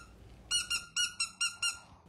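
A squeaky dog toy being squeezed: about six quick, high-pitched squeaks in a row, starting about half a second in.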